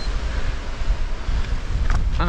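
Wind buffeting an action camera's microphone: a steady low rumble with hiss. There is a single sharp knock just before the end.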